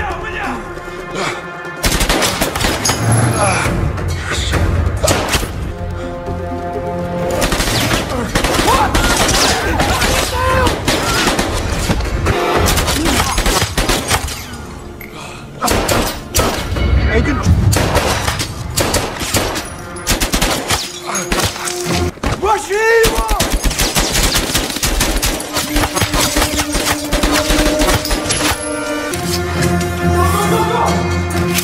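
Repeated bursts of gunfire, pistol shots and rapid volleys, in an action-film soundtrack over a music score.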